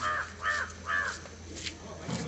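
A crow cawing three times in quick succession, about half a second apart.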